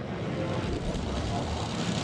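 Top Fuel dragster's supercharged nitromethane V8 running at full throttle down the drag strip: a loud, steady, rumbling noise heard over the TV broadcast.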